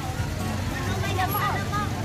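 Market voices talking nearby over a steady low hum.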